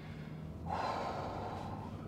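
A person's drawn-out breath, starting about two thirds of a second in and running on, over the low steady hum of the car's engine at crawling speed inside the cabin.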